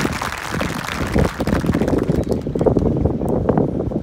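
Applause from the stands dying away about halfway through, over wind buffeting the microphone with a low rumble.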